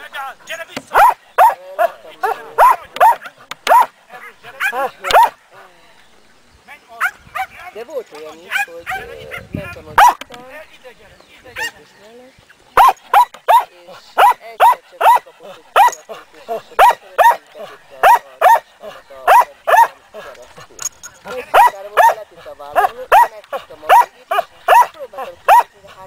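A mudi herding dog barking repeatedly at the sheep it is working, about two sharp barks a second. There are two long runs of barking with a pause of several seconds in the middle.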